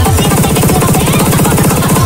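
Electronic music: a very fast, even roll of pitch-dropping kick drums, about twenty hits a second, under a steady higher tone, loud throughout.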